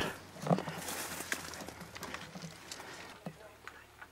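Branches and brush rustling and footfalls of a person pushing through pine undergrowth, with scattered small snaps and clicks. A short murmur of voice comes about half a second in.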